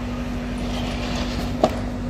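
A steady low machine hum, with a single sharp click near the end.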